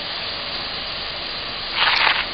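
A steady, even hiss with no distinct event in it, and a brief louder rush of noise near the end.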